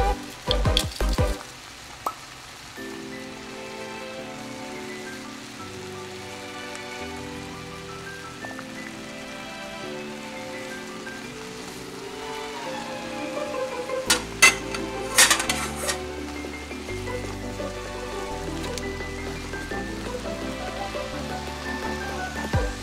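Shrimp and garlic sizzling as they fry in an oiled pan. A few sharp clicks come just after the start, and a cluster of loud clinks and scrapes of a utensil against the pan comes about fourteen seconds in.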